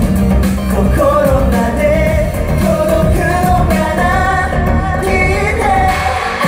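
Pop song performed live: a male lead singer sings a melody into a microphone over loud backing music with a heavy bass.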